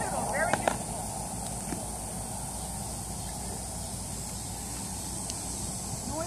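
Steady outdoor background hiss with a constant high-pitched band and a low rumble. In the first second there is a brief faint voice and two sharp clicks.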